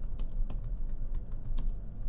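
Typing on a computer keyboard: a run of irregular key clicks over a low steady hum.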